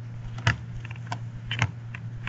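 A few scattered sharp clicks and taps from handling things on a desk, over a steady low electrical hum.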